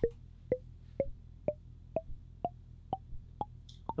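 Intellijel Plonk physical-modelling percussion voice struck about twice a second, each short pitched hit decaying quickly. The pitch climbs steadily from hit to hit because a long slew on the Teletype's CV pitch output makes it glide slowly to the new note instead of jumping.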